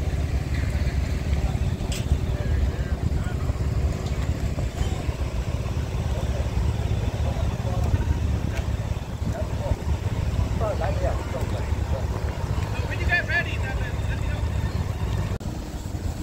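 Police motorcycles idling, a steady low rumble.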